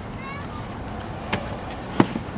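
A person climbing into a car's back seat through the open rear door: a short knock about a second and a half in, then a sharp thump at the very end, over steady street background.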